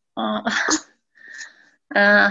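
A person sneezing once, a short voiced onset breaking into a sharp burst within the first second.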